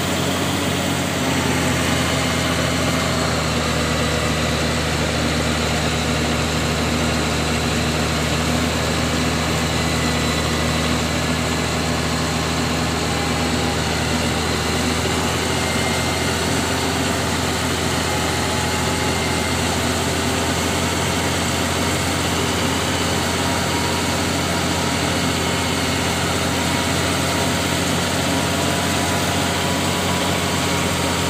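Bulldozer diesel engine running steadily while working, heard close from the operator's seat beside the exhaust stack, its low note strengthening a little about a second in.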